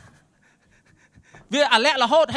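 A man breathing hard into a handheld microphone in a short pause between phrases, faint against the room, then his loud amplified preaching voice resumes about one and a half seconds in.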